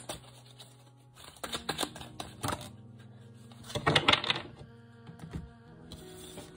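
Tarot cards being shuffled and one drawn and laid on the table: a run of light clicks, flicks and card slaps, loudest about four seconds in.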